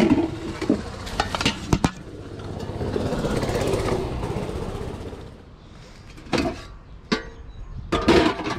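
Clear plastic bag crinkling around stacked metal muffin tins as they are handled and set aside, with a few sharp clinks of the tins and later a couple of knocks.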